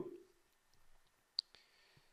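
A single sharp computer mouse click about one and a half seconds in, against quiet room tone.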